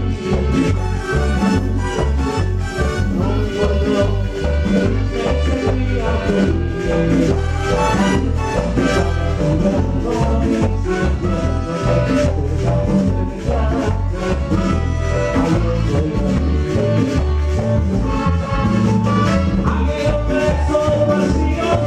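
Live band playing Latin salsa-style music, with a pulsing bass and percussion.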